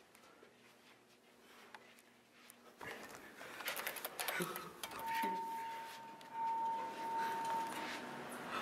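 Near silence for the first few seconds, then faint clicks and a brief muffled voice, followed by a steady high-pitched tone held for about three seconds.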